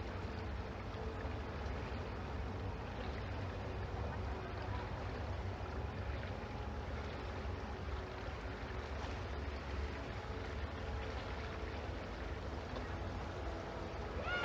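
Steady background hubbub of a swimming-pool arena: an even murmur with a low rumble beneath, without clear words or music.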